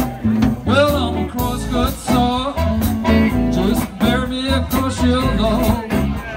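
Live electric blues band playing: electric guitars, bass guitar and drums, with a harmonica bending notes between vocal lines.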